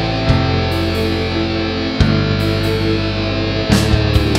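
Instrumental passage of a progressive rock song: held, heavy guitar chords that change twice, then a falling pitch sweep near the end.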